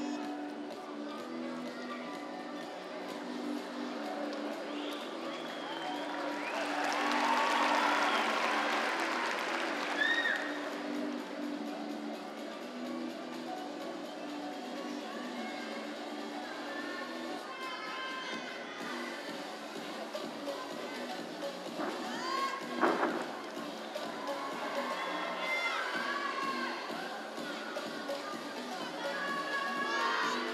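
Arena crowd chatter and shouts over faint background music, with a swell of cheering about seven seconds in and a sharp thump about two-thirds of the way through.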